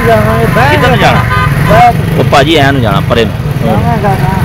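Men talking over a motorcycle engine idling with a steady low hum.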